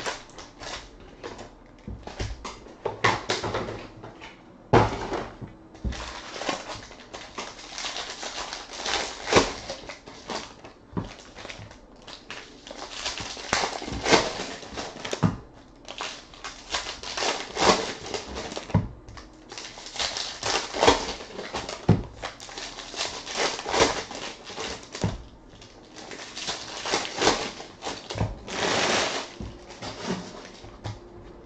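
Foil wrappers of 2016 Bowman Jumbo baseball card packs being torn open and crinkled, with cards and packs handled and stacked on a table: a busy run of irregular rustles and small sharp knocks.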